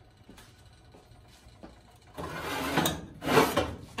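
Quiet room tone for about two seconds, then a loud run of rubbing and scraping handling noises, strongest in the last second.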